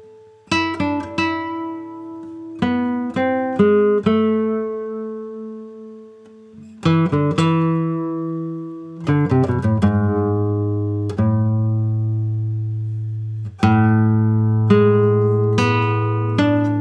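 Dieter Hopf Grandioso nylon-string classical guitar played fingerstyle in a slow piece. Short runs of quickly plucked notes and arpeggios are left to ring out, and a deep bass note sustains under the melody from about nine seconds in.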